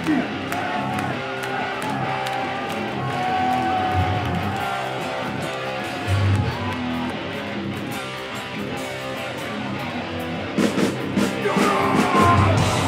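Live metal band playing on stage, electric guitar prominent, with louder sharp hits coming in near the end.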